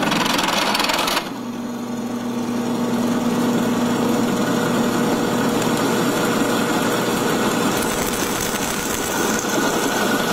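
Drill press running as a 5/16-inch drill bit with built-in countersink bores out a punched stud hole in a steel concave horseshoe. A harsher cutting noise for about the first second, then a steady motor hum with the bit cutting through the metal.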